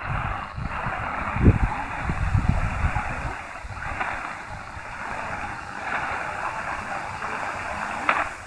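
Degen DE1103 portable receiver's speaker giving weak shortwave AM reception of a distant station in the 75-metre band: a steady hiss of static with a narrow, muffled sound and no clear programme above it. Low gusts of wind on the microphone rumble through the first few seconds.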